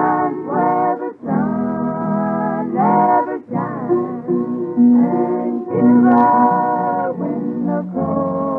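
A country vocal group singing a slow closing theme in close harmony, holding long notes between short breaths, over guitar accompaniment. It is an early-1950s radio transcription-disc recording, sounding muffled with no highs.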